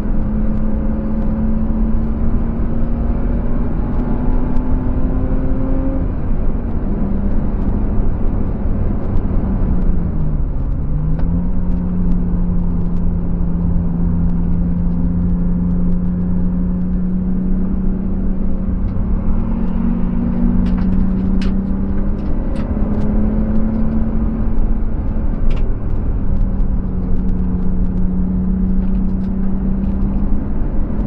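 A BMW E36's M50B25TU 2.5-litre straight-six, heard from inside the cabin at track speed over tyre and wind noise. The engine note climbs steadily for the first six seconds and then drops. It dips briefly and recovers around ten seconds in, then holds fairly steady. A scatter of sharp ticks comes in during the latter part.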